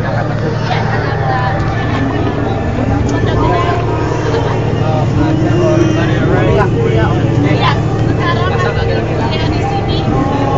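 Indistinct talk from several people around, over a steady low hum.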